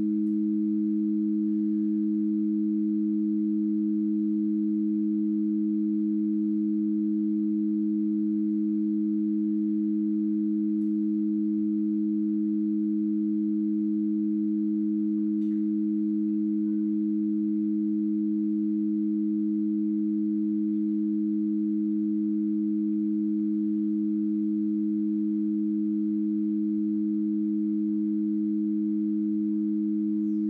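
Two low, pure tones held together without a break or any change in pitch or loudness: experimental music of sustained sine-like tones in a clarinet performance.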